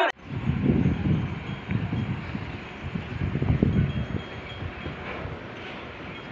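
Wind buffeting the microphone in irregular gusts over a faint steady background hiss; the buffeting is strongest for the first four seconds and then eases.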